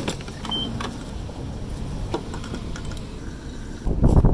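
Gasoline pump nozzle dispensing fuel into a car's filler neck: a steady low rush with a few light clicks and a brief high beep about half a second in. Right at the end, a louder clatter of the fuel cap being handled begins.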